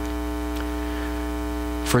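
Steady electrical mains hum with a buzzy stack of even overtones, unchanging in level throughout.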